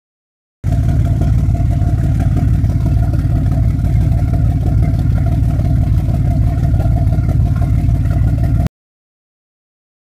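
Port Hino 175 hp marine diesel running steadily, heard at its wet exhaust outlet on the hull: a low, even exhaust pulse with cooling water discharging. It starts suddenly about half a second in and cuts off suddenly near the end.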